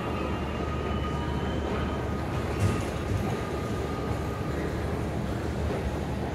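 Steady low rumble of an electric commuter train at the underground platform below, with faint steady whining tones over it. A single brief knock comes about two and a half seconds in.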